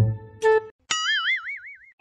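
A cartoon "boing" sound effect: a springy tone that wobbles up and down for about a second, starting about a second in. It follows a short held musical note.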